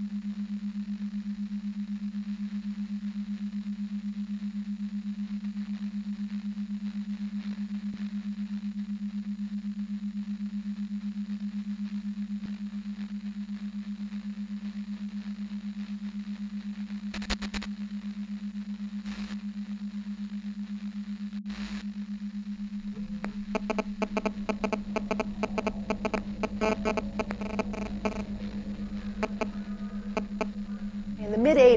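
Electronic sound-design intro: a steady low hum with a faint hiss, a few isolated clicks past the middle, then rapid radio-like static crackles and bursts of tones in the last several seconds.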